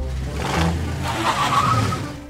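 Cartoon sound effect of a small car's engine running as the car drives in.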